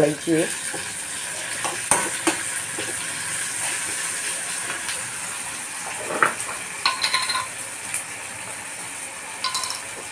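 Chopped tomatoes, onion and green chillies frying in oil in a kadhai, with a steady sizzle. A steel spatula stirs them, clicking and scraping against the pan a few times.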